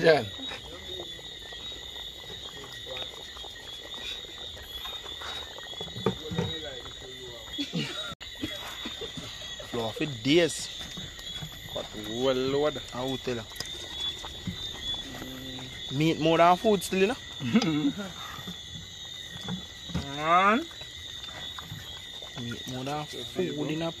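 A steady, high-pitched night chorus of calling insects and frogs, with voices talking in snatches over it.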